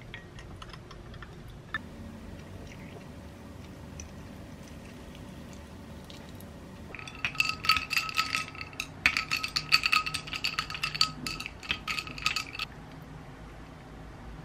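Ice cubes clinking against a tall drinking glass as an iced latte is stirred with a metal straw: a quick run of ringing clinks that starts about halfway in and lasts some six seconds. Before that the sound is faint, as milk is poured over the ice.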